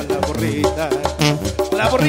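Live banda music: a Mexican brass band playing an instrumental passage between sung verses, with horn lines over a steady bass beat.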